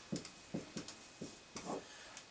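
Marker writing on a whiteboard: a quick series of short, faint strokes as letters are written.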